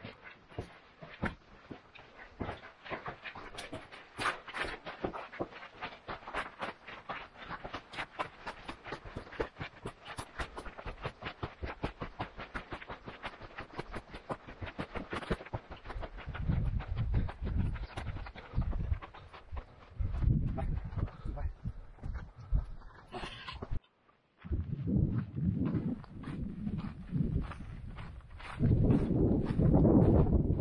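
Footsteps crunching on a dry, rocky dirt trail: a quick, uneven run of short scuffs from several walkers. Wind buffets the microphone in low rumbles through the second half, and the sound cuts out briefly near the end.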